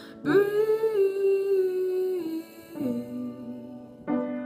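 A young woman singing a slow ballad solo in long held notes: a sustained higher note from a quarter second in, then a step down to a lower held note near three seconds.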